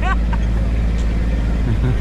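Engine of a small motor vehicle running steadily while riding slowly, a low constant hum with no change in pitch.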